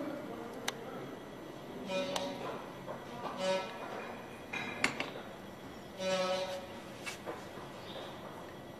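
Handling noise from a terminal lug being worked onto the end of a heavy 0000 AWG stranded copper cable and set between resistance soldering electrodes. There are about four short squeaks and several sharp light metal clicks.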